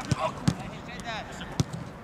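A football being kicked on artificial turf: two dull thuds about a second apart, among players' shouts.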